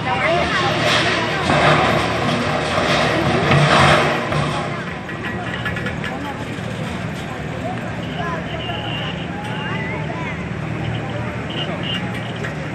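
Toyota FJ Cruiser engine running at low speed as the SUV crawls up and over steel ramps. It is louder for the first few seconds, then settles to a steady hum.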